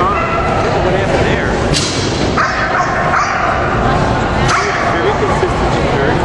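A dog barking in short pitched bursts, about half a second in and again between two and a half and three and a half seconds in, over steady hall noise.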